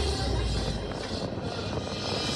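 Vinahouse dance remix in a breakdown: the kick and bass drop out, leaving a quieter, even, hiss-like wash of synth noise with faint sustained tones.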